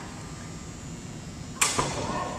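Two sharp knocks in quick succession near the end, about a fifth of a second apart, over the low hubbub of a large room.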